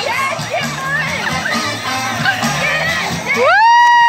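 A crowd of children and adults shouting and cheering around a pool where people are catching salmon by hand. Near the end a loud siren-like tone rises quickly in pitch and then holds steady.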